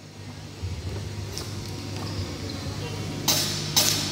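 Steady low hum from the band's amplifiers and PA in a large, reverberant gym hall, with faint voices; near the end a few sharp, bright percussion strikes from the drum kit as the band gets ready to start.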